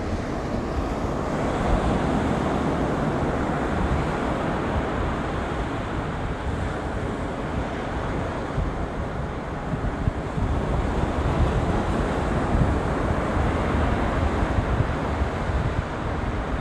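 Ocean surf washing onto a beach, mixed with wind buffeting the microphone in a steady, rushing noise that rises and falls irregularly.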